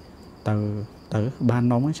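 A man's voice reading aloud in Khmer, in a few drawn-out syllables held on a fairly level pitch, over a faint steady high trill that runs throughout.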